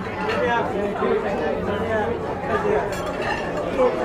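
Steady murmur of many diners talking at once in a large dining hall, with no single voice standing out.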